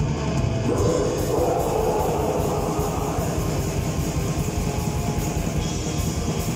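Metal band playing live: distorted electric guitars and drums in a dense, loud wall of sound. A long held note rises out of the mix about a second in and fades over the next couple of seconds.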